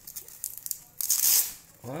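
Hook-and-loop (velcro) on a fabric helmet cover pulled apart: a few light crackles of handled fabric, then a short ripping sound about a second in.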